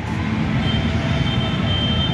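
Steady low outdoor rumble, with a faint high-pitched steady whine that comes in about a third of the way through.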